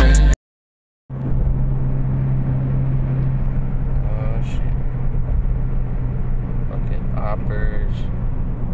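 Hip-hop music cuts off at the very start, then after a moment of silence comes road and engine noise inside a moving car's cabin: a steady low drone with rumble, with faint voices now and then.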